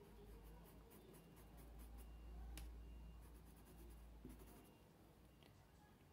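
Near silence, with the faint, scratchy strokes of a flat paintbrush dabbing thinner onto cotton fabric, and a low hum that stops about three-quarters of the way in.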